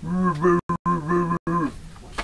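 A man's long wordless vocal sound, like a drawn-out hum or groan, held at a low, nearly steady pitch that steps slightly up and down, broken by a few short gaps.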